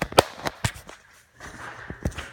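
A rapid run of sharp knocks and clicks, several close together in the first moment and a few more near the end.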